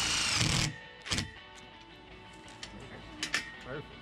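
Cordless Milwaukee driver running as it drives a screw through a swivel mount into an aluminium tower leg, stopping under a second in, followed by a few light clicks.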